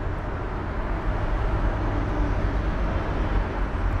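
Steady outdoor background noise, mostly a low rumble, with no single event standing out.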